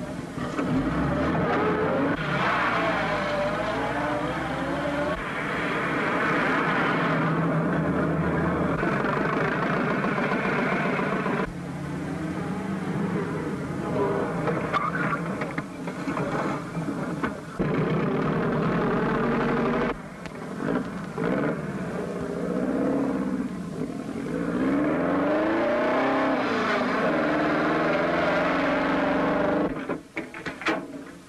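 Car engine noise from an early sound film: a car driven fast, its engine rising and falling in pitch, the sound changing abruptly several times with the cuts between shots.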